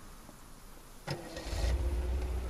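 Vintage convertible car's engine starting: a click about a second in, then the engine catches and runs low and steady.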